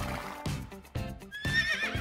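A horse whinnying, a high wavering call in the second half, over background music.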